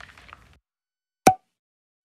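A single short pop sound effect about a second in, of the kind used for text popping onto a title card, after faint room sound cuts to silence.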